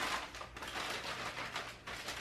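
Christmas gift wrapping paper being torn and crinkled by hand, a steady run of papery crackles.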